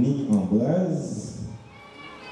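A person's voice in a drawn-out utterance whose pitch glides up and then down, fading about one and a half seconds in.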